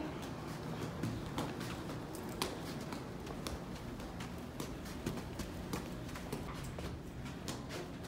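Footsteps of an adult and a toddler walking along a carpeted hallway: light, irregular taps and clicks over a low steady hum.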